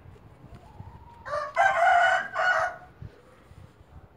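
A rooster crowing once, loud, beginning about a second in and lasting about a second and a half.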